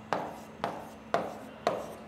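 Stylus writing on the glass of an interactive touchscreen display: four short taps about half a second apart, each trailing off in a brief scratch.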